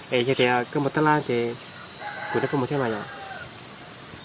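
A rooster crowing in the background about two seconds in, one call with a held opening note that then drops, over a steady high-pitched insect drone.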